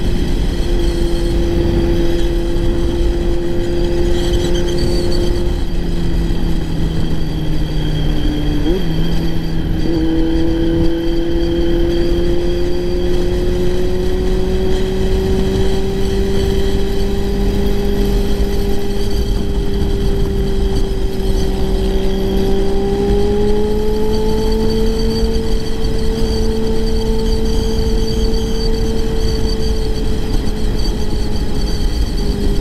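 Kawasaki Z900's inline-four engine running under steady throttle through an aftermarket exhaust, over heavy wind rush on the microphone. Its pitch sags, gives a quick blip about nine seconds in, then rises slowly over the next fifteen seconds as the bike gathers speed.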